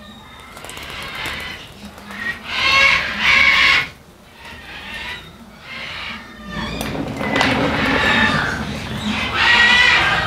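African grey parrot giving harsh, growling calls, loudest about three seconds in, with further rough vocal sounds later on.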